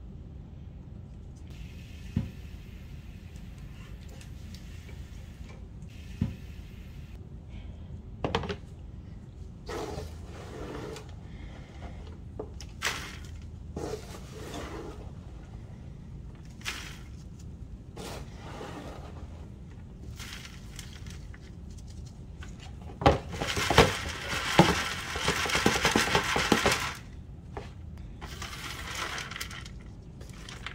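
Dry worm-bin compost crunching and rustling as a gloved hand picks through it and works it across a wire-mesh sifting screen, with scattered light clicks of bits dropping. About three-quarters of the way through comes a louder few seconds of scraping and rattling on the screen.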